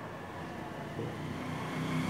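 A vehicle engine humming, faint at first and growing steadily louder from about a second in, as if approaching.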